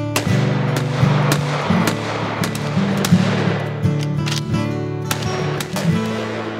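Background music with a steady bass line, mixed with handgun shots: a shot just after the start whose echo trails off over about two seconds, then several more sharp cracks.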